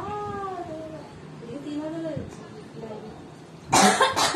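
Two short, high-pitched voiced calls, each rising and then falling in pitch, followed near the end by a loud cough in two bursts.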